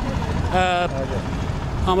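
Steady low rumble of idling bus and car engines, with a man's voice briefly holding a drawn-out syllable about half a second in.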